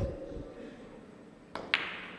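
Cue tip striking a carom billiard ball with a sharp click, then about a second and a half later two quick clicks of billiard balls colliding, the second ringing briefly.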